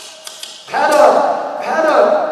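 A person's voice, starting about two-thirds of a second in, after a quieter stretch with a few faint taps.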